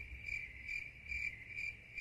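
Cricket chirping sound effect, a high chirp repeating about two and a half times a second over otherwise dead silence: the comic 'crickets' gag for an awkward silence.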